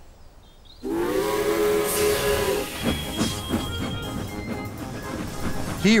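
Animated steam locomotive's whistle blowing once, a steady chord-like tone held for about two seconds, followed by the engine steaming along with hiss and chuffs over background music.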